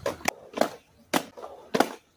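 Skateboard deck clacking on concrete: about five sharp clacks about half a second apart, from tail pops and the board slapping down on the ground.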